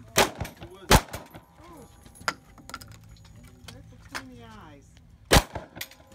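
Three sharp gunshots from a cowboy action shooter's gun: two about a second apart near the start, then a long gap with a couple of faint clicks before a third shot near the end.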